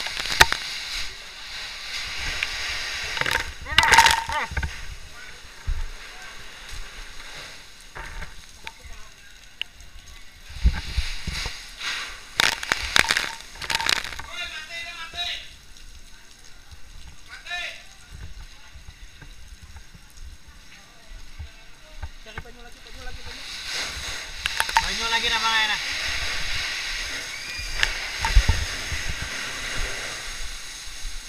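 Water from a fire hose spraying and splashing onto burning debris in intermittent surges, with voices calling in the background.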